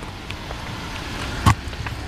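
Steady outdoor background noise with a low rumble, broken by one sharp click about a second and a half in.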